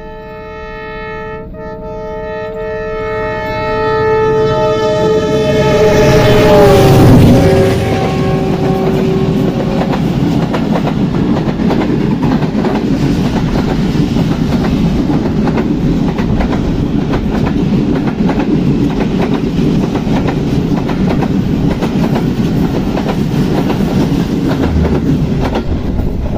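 Horn of a ZCU-30 diesel locomotive sounding a long blast as it approaches on a through run, growing louder and dropping in pitch as it passes about seven seconds in. The coaches of the express then run past at speed with a steady rumble of wheels on rail.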